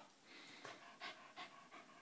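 Pembroke Welsh corgi panting faintly, quick breaths about two or three a second.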